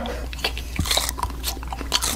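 A person biting into and chewing a small raw red chili pepper, a run of short wet crunches and mouth clicks.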